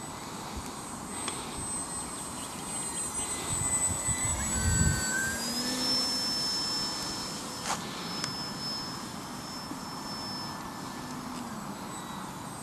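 Electric motor and propeller of a ParkZone F4U Corsair radio-controlled model plane whining in flight: a thin, high tone that drops in pitch about halfway through. A low rumble swells around the middle and is loudest about five seconds in.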